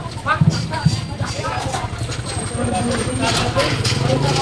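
Busy market street: people talking nearby, their voices mixing over the steady low rumble of traffic and a motorcycle engine.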